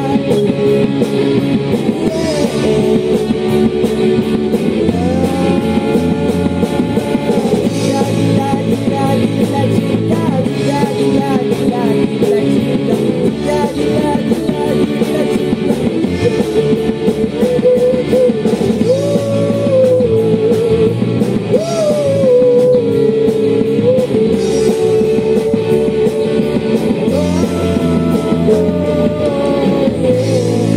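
Live rock band playing: a singer's voice over electric guitar, bass guitar and drums.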